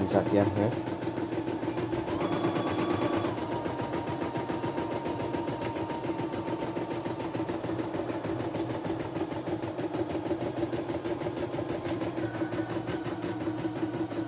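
CNY E960 computerized embroidery machine stitching at a steady pace in embroidery mode, its needle keeping up a rapid, even chatter.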